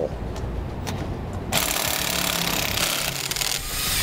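A cordless power driver spinning off the nuts that hold a trailer's electric drum brake backing plate to the axle. It runs lower and rougher at first, then turns loud and harsh for about two seconds in the middle.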